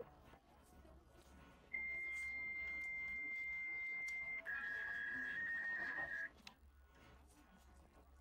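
Fax machine handshake tones. A steady high beep starts about two seconds in and holds for over two seconds. It then gives way to a warbling two-tone signal that cuts off about six seconds in: the sound of a fax connecting.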